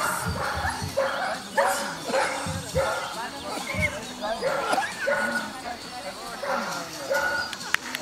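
German shepherd barking repeatedly and excitedly while running an agility course, a string of short barks about one to two a second.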